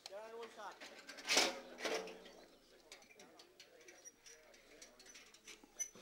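Faint background voices of people nearby, with a short louder voice or call about a second and a half in and a few light knocks and ticks of hand work.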